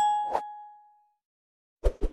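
Notification-bell 'ding' sound effect of a subscribe animation, ringing with a clear tone and fading out within about a second, with a click shortly after it starts. Two short clicks come near the end.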